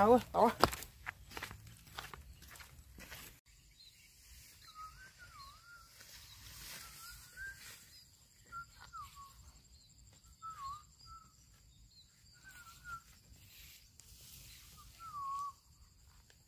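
A songbird repeats short whistled, warbling phrases every second or two, over a faint steady high-pitched whine. Soft footsteps and rustling through grass and brush run underneath.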